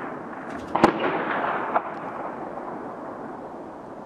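A loud, sharp bang about a second in, trailing off in a rolling echo, then a smaller crack just under a second later, over a steady background hiss.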